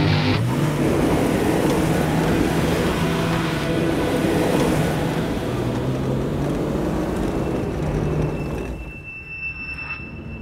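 Background score with held low notes over a steady rushing noise of a car driving. Near the end the rush drops away to a quieter passage with a thin, high held tone.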